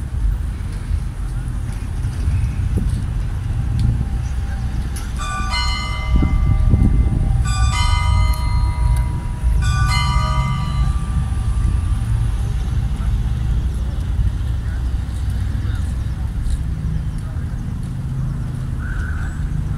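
A church bell struck three times, about two seconds apart, each stroke ringing on for a second or so, over a steady low rumble.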